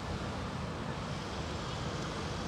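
Steady outdoor background noise: an even hiss with a low rumble underneath, with no distinct events.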